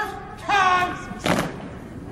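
A drawn-out shouted military word of command, then a single sharp thump about a second later.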